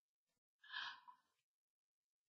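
Near silence, broken by one faint, short breath out a little over half a second in.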